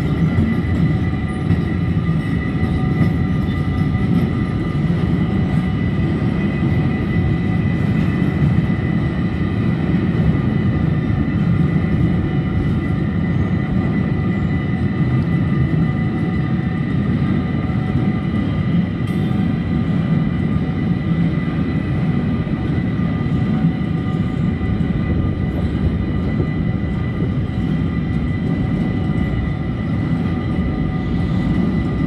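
Freight wagons rolling past over a level crossing: first sliding-wall wagons, then empty car-transporter wagons, with a steady, continuous rumble of wheels on rail. A steady high-pitched tone runs through the rumble.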